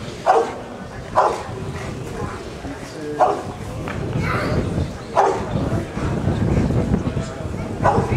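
Rottweiler barking while it guards a helper in IPO protection work: about five short, sharp barks spaced one to two seconds apart.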